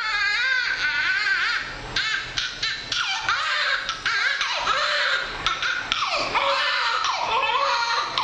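A newborn baby, a couple of minutes old, crying hard: one wavering cry after another with short breaks for breath.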